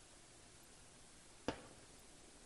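A single sharp knock about one and a half seconds in, a stainless steel saucepan set down on a glass-top stove; otherwise quiet room tone.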